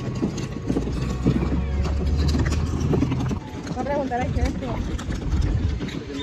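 Plastic wheels of a rolling cooler rattling and rumbling over cobblestones, a dense low rumble full of small clacks, which drops off about three seconds in as the cooler reaches smooth concrete. Faint voices follow.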